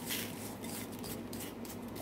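Coarse kosher salt pouring into a plastic bucket: a brief hiss of falling grains at the start, then a few short scratchy rustles.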